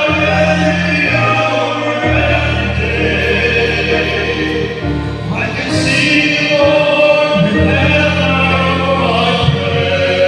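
Choral music: voices singing in harmony over held bass notes that change every second or two, with a brief rising swish near the middle.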